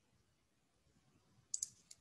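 Near silence, then three or four quick, faint clicks close together near the end.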